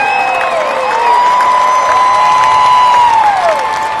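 Large stadium crowd applauding and cheering, with long drawn-out whoops held above the clapping.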